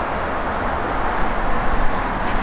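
Steady outdoor background noise with a low rumble.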